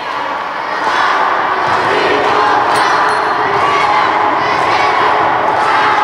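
A group of children shouting their team cheer together: a chorus of many voices that swells over the first second and then holds steady.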